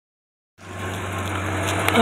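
1969 Buick Electra's V8 idling steadily with a low, even hum, coming in about half a second in.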